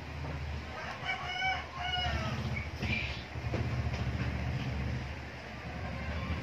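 A rooster crowing about a second in, in two pitched parts, over a steady low hum.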